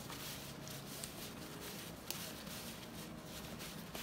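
Faint rustling of a paper towel wiped over skin to dry it: a few soft brushing strokes over low room hiss.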